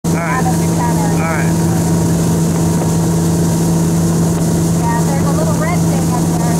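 Towing motorboat's engine running at a steady, unchanging pitch at speed, over a constant hiss of wind and churning wake water. Short high-pitched vocal calls break through near the start and again near the end.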